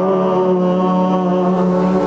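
Voices in church singing, holding the long final note of a hymn as one steady, unwavering pitch.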